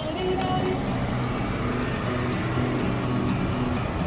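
Car engine and road noise heard from inside the cabin, a steady low rumble, with music playing over it.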